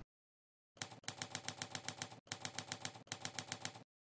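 Typewriter key-strike sound effect: rapid, even clacks at about seven a second in three or four runs with short breaks, stopping shortly before the end.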